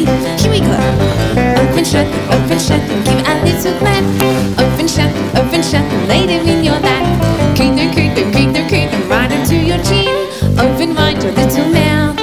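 Live band playing an upbeat instrumental tune led by acoustic guitar and keyboard, with a steady beat.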